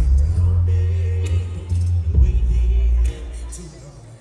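Live hip-hop music played loud over a concert PA, with a heavy sustained bass that drops out about three seconds in.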